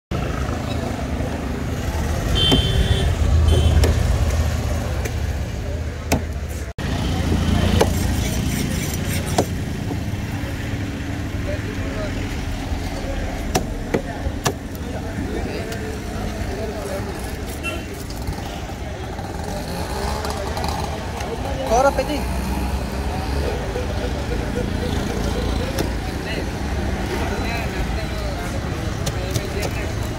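Roadside street ambience: a steady low rumble of passing road traffic, swelling twice in the first eight seconds, with background voices and a few sharp knocks.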